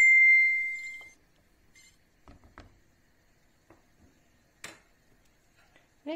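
A metal cooking pot struck once by a stirring spoon, ringing with a clear bell-like tone that fades within about a second. A few faint soft knocks follow later.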